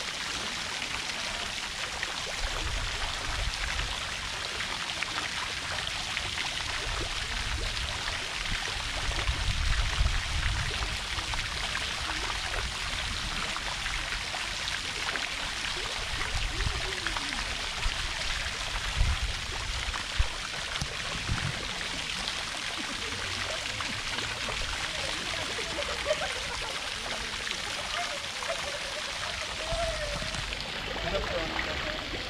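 Fountain jets splashing steadily into a shallow pool. Low rumbles come and go underneath, with a couple of short knocks a little past halfway.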